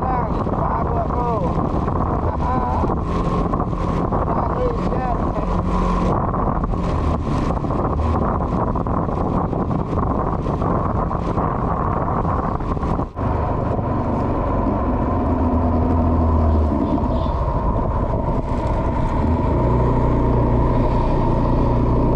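Motorcycle on the move: the engine runs steadily under wind buffeting the handlebar-mounted microphone, with road noise from the wet surface. About thirteen seconds in the sound drops out for a moment.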